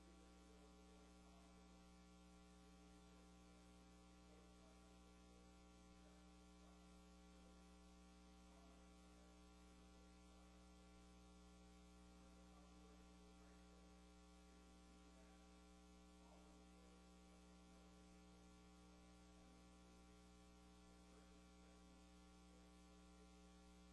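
Near silence: a faint, steady electrical mains hum with its evenly spaced overtones over low hiss, unchanging throughout.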